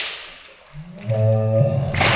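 A water balloon popped with a needle: a sharp pop, then water splashing down for about half a second. A little under a second in, a person's voice lets out a long drawn-out cry.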